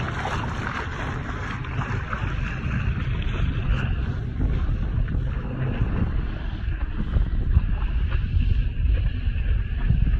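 Wind buffeting the microphone over water rushing and splashing along the bow of a sailboat under sail. The water hiss is strongest in the first few seconds and fades, leaving mostly a low wind rumble toward the end.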